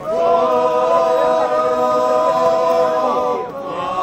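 A group of men singing together in the open air, holding one long drawn-out note that breaks off about three and a half seconds in.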